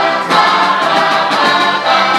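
A group of heligonkas (Czech diatonic button accordions) playing a folk song together while the players sing along in chorus.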